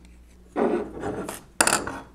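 Metal parts of a mechanical calculator frame and an adjustable wrench being handled: a scraping rub, then a sharper clatter near the end.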